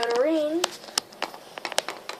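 A brief high-pitched wordless voice sound that bends up in pitch, followed by a run of light clicks and taps from small plastic toy figures being handled and moved.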